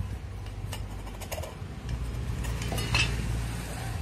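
A steel screwdriver scraping and clinking inside the bearing seat of a ceiling fan's metal end cover, with a scatter of light metallic clicks. It is cleaning the bearing seat after the old bearings have been pulled.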